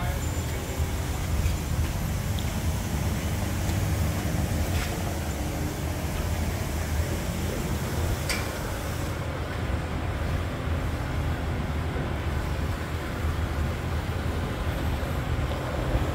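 Steady low rumble of background noise with no clear single source, with a couple of faint light clicks in the middle.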